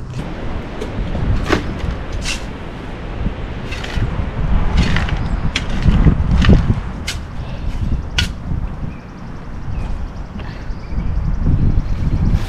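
A shovel digging into loose dirt, with a handful of short scrapes and knocks spread through, over a steady low rumble.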